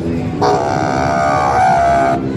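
Eastman baritone saxophone being played: a short low note, then, about half a second in, a louder long held note.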